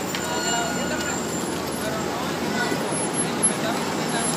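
City street ambience: traffic noise and people talking in the background, with a thin high squeal through about the first second and a half.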